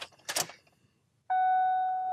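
A short click of the key in the ignition, then about a second later a car's dashboard chime: one steady electronic tone held for over a second. It sounds as the new key is switched on during Ford two-key programming, the step that programs that key.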